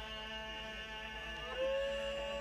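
Steady electrical hum and ringing tones from a public-address system. Near the end a man's voice comes in through it, holding one long chanted note.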